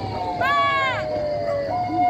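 Emergency-vehicle siren whose wail slowly falls in pitch, switching near the end to a two-tone hi-lo pattern. A short, arched, high call sounds over it about half a second in.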